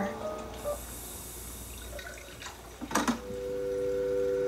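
Music-video intro audio: a short electronic melody fades out, a quiet hissy stretch follows, then about three seconds in a click and a steady telephone dial tone begins.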